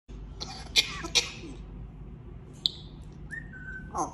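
African grey parrot making a few sharp clicks in the first second and a half, then a clear whistled note a little past three seconds in that steps slightly down, holds briefly and ends in a quick downward sweep.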